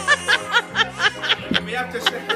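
Rapid, high-pitched laughter, about five or six short bursts a second, over soft background music.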